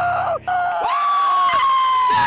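A man's long, high-pitched yell held on one note for over a second, sagging slightly in pitch at its end, a celebratory cheer.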